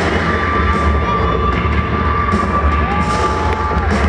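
Arena crowd cheering and shouting over loud intro music with a deep, steady bass drone. Two long held tones sound over it, the second sliding up about three-quarters of the way through.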